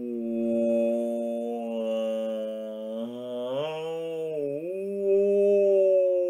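A man imitating whale song with his voice: long, held hooting tones that glide slowly in pitch, rising about three and a half seconds in, dipping briefly, then settling higher.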